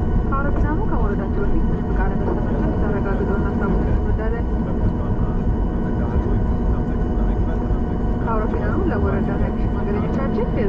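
Steady cabin rumble and hum of a Boeing 737 taxiing on its jet engines, heard from inside the passenger cabin. Passengers talk in the background near the start and again near the end.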